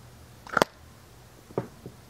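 Handling noise: a sharp knock about half a second in, then two fainter clicks shortly apart near the end, over a quiet room.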